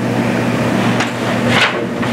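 Steady low electrical hum, with a single sharp knock about a second in and a brief rustling thump about a second and a half in.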